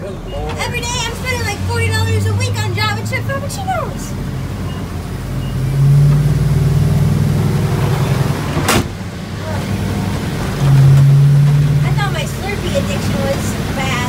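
Delivery truck engine heard from inside the cab while driving, a steady low drone that climbs and grows louder twice as the truck accelerates. A single sharp click comes about nine seconds in.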